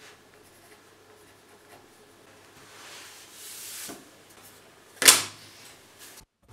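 Quiet workshop with faint handling noise: a brief rubbing swell about three seconds in, then a single sharp knock about five seconds in, like wood or a template being set down on a table.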